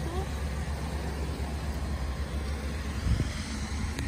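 Steady low rumble with an even hiss, and a brief bump about three seconds in.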